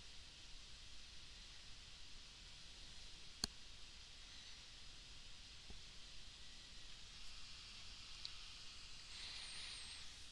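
Near silence: faint steady hiss of room tone, with one sharp click about three and a half seconds in and a much fainter click a couple of seconds later.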